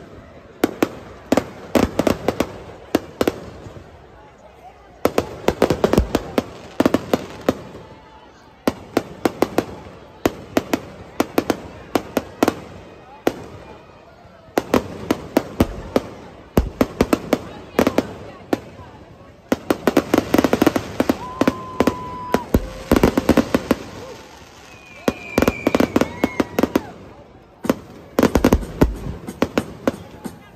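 Aerial fireworks going off in rapid volleys of sharp cracks and bangs, each volley lasting a few seconds, with short lulls between them.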